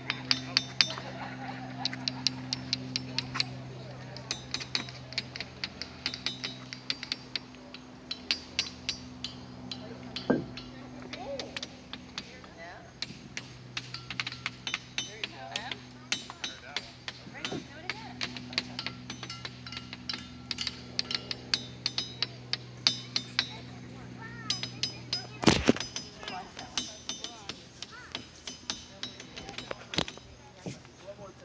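Hammers striking diabase boulders in a rock field, many irregular metal-on-stone clinks from several strikers, each with a short, high ring. One louder, deeper knock comes about 25 seconds in.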